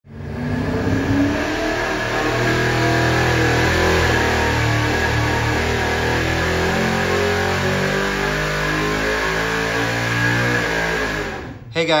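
Carbureted small-block Chevy V8 running loud and steady at high revs on an engine dyno, starting abruptly and cutting off just before the end.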